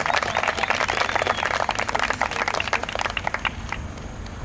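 Crowd clapping, the applause thinning out to a few last claps and dying away near the end.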